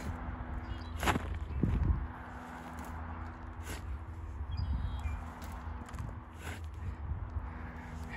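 Shovel scooping compost and tipping it into a wheelbarrow: scraping and soft thuds with a few sharp knocks, the loudest a second or two in. A steady low rumble runs underneath.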